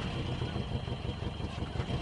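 Car engine running with a steady low rumble, heard from the vehicle.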